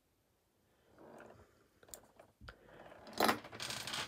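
Handling noises at a fly-tying vise: a few light clicks about two seconds in, then a louder scraping rustle near the end as the finished fly goes back into the vise jaws.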